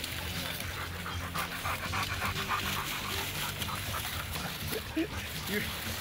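Hunting dog panting quickly and evenly at close range.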